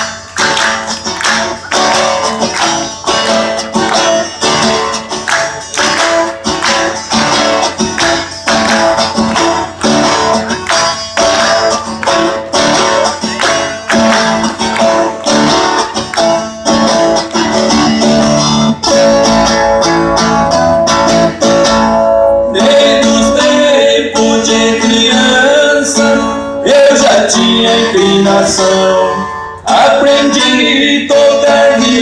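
Live Brazilian caipira (sertanejo de raiz) music: strummed viola and guitar with a crisp, even beat. About 22 seconds in the playing turns fuller and more sustained, with singing.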